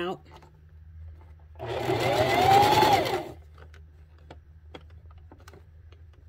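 Electric sewing machine running a short burst of stitches, about a second and a half long, starting about one and a half seconds in; its motor whine rises and then falls as it speeds up and slows. Faint clicks follow as the fabric is handled.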